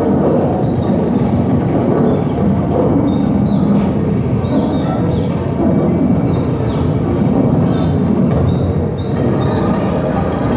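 Live industrial noise music played on electronic gear: a loud, dense, unbroken mass of low noise, with short faint high sliding tones over it now and then.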